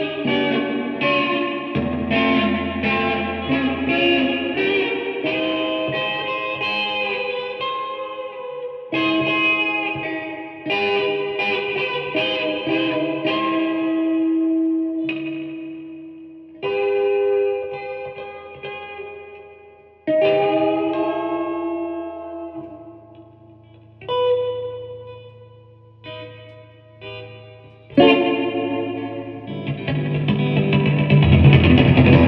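Solo electric guitar played through an amp: runs of picked notes that ring out, a long held note about fourteen seconds in, then sparser single notes with pauses between them.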